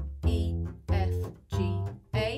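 Double bass played pizzicato: three plucked notes, each starting sharply and decaying, about two-thirds of a second apart, continuing up the A natural minor scale.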